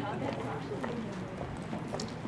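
Indistinct chatter from a group of people walking together, with their footsteps clicking on pavement.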